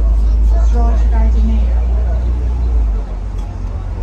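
Low, heavy rumble of a double-decker bus on the move, heard from inside on the upper deck, easing off about three seconds in.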